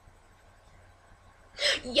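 Near silence, then about one and a half seconds in a short, sharp, breathy burst from a person's voice that runs straight into speech.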